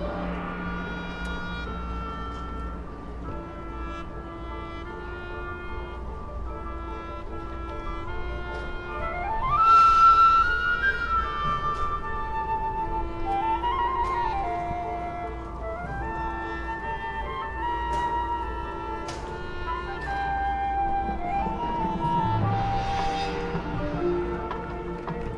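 Marching band with its front ensemble playing slow music of long held notes, swelling with a rising line about ten seconds in to its loudest moment.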